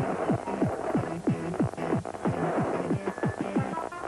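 Electronic music or sound effects: a quick, even run of bass thuds, each dropping in pitch, about three a second, over a hissy wash.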